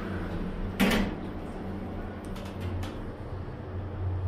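Stainless steel lift doors shut with a single thud about a second in, over the steady low hum of an Otis 2000 hydraulic lift's pump motor as the car sets off upward. A few faint clicks follow in the second half.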